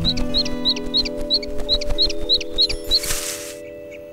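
Baby birds cheeping in a nest as a cartoon sound effect: a run of short high chirps, about four a second, over sustained notes of background music. A brief hiss about three seconds in.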